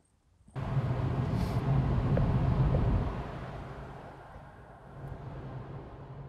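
Car engine and road noise with a steady low hum, starting after a brief silence and dying down about halfway through.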